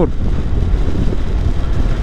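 Wind rushing steadily over the microphone of a moving motorcycle, with the bike's running and road noise underneath.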